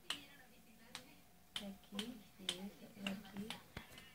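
A series of sharp clicks, about eight in four seconds at an uneven pace, between short snatches of a soft voice.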